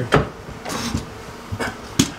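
Three short sharp knocks of wood on wood, a shelf board and spirit level being bumped into place against a barnwood plank wall, with rustling between them.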